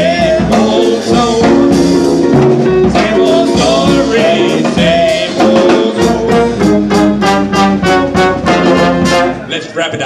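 Live traditional jazz band: two men singing over trumpet, trombone, clarinet, tuba, guitar and drums. In the second half the band plays a run of short, evenly spaced accents, and the music dips near the end.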